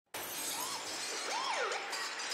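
Intro sound effect: a bright, crackling noise wash that starts suddenly, with whistle-like pitch glides swooping up and down through it.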